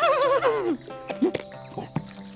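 A cartoon horse's whinny: a pitched call that wavers and then falls away, ending just under a second in, over background music.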